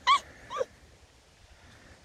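Two short, high-pitched cries about half a second apart, both in the first second; the second falls in pitch.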